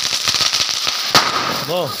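Handheld Diwali sparklers fizzing and crackling steadily, with one sharp pop a little past a second in.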